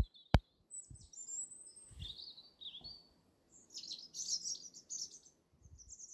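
Two sharp clicks at the start, then small birds chirping and twittering in quick, high phrases, some notes sliding down in pitch.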